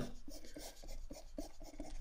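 Stylus scratching on a drawing tablet as a line is drawn: a faint, quick run of short rubbing strokes.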